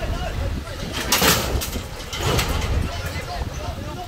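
A steel truck cage section shifting as it is lifted, with two short scraping, rattling noises about one and two seconds in, over a low steady rumble.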